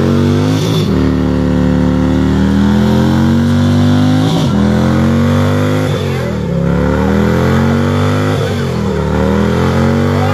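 Motorcycle engine revving hard during a burnout, held at high revs to spin the rear tyre in place. Its pitch sags and climbs back several times as the throttle is worked.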